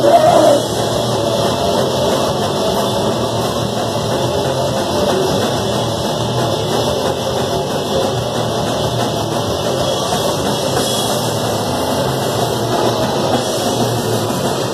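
Crust punk band playing live, with distorted electric guitar, electric bass and a drum kit in a loud, dense, steady wall of sound.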